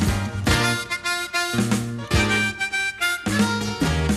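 Blues harmonica solo with long held, bending notes over a band's backing, in a country-blues song.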